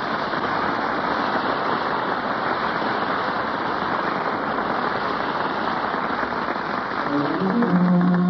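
Studio audience applauding, a steady dense clatter of many hands, on an old 1936 radio broadcast recording. Orchestra music comes in under the applause near the end.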